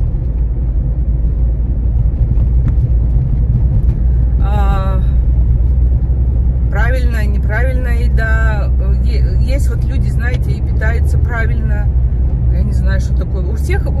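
Steady low rumble of a moving car heard from inside its cabin, with a woman talking over it for much of the time.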